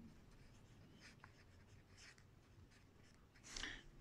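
Faint scratching of a pen writing on notebook paper, in short separate strokes. A brief, slightly louder soft sound comes near the end.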